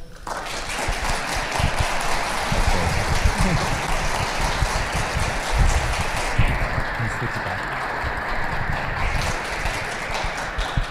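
Audience applauding, starting suddenly and holding steady, then thinning out after about six seconds.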